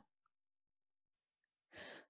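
Near silence, with a faint intake of breath near the end just before speech.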